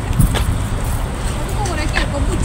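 Steady low rumble of a car on the road, with faint voices in the background.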